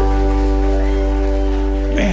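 A live band holds one long sustained chord over a steady bass, the ringing final chord of a country song.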